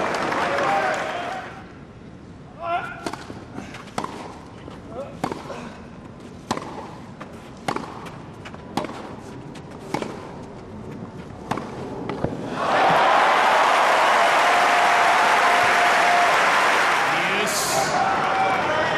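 Tennis rally on a grass court: sharp, irregular pops of a tennis ball struck by racquets and bouncing, over a hushed crowd, from about two and a half seconds in. About twelve and a half seconds in the point ends and the stadium crowd breaks into loud cheering and applause.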